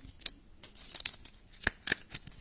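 Clear plastic card sleeve and rigid top loader crinkling and clicking as a trading card is slid in, in about four short crackles.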